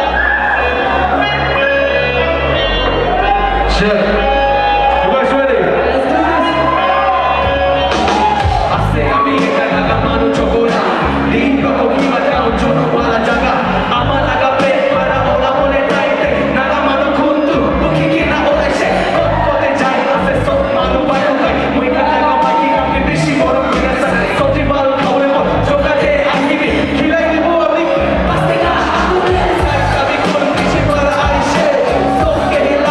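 Live rap over a DJ-played hip-hop beat: a man's voice rapping into a microphone through the PA, over a steady, bass-heavy backing track.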